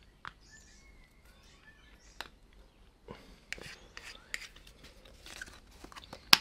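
Faint scattered clicks and crackles of plastic paint bottles and a cup being handled while acrylic paint is poured into the cup, the clicks coming more often in the second half.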